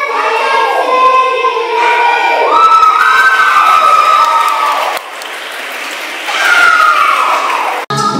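Loud dance music with singing, mixed with a group cheering and whooping. It drops in level about five seconds in, comes back about a second later, then cuts off abruptly just before the end.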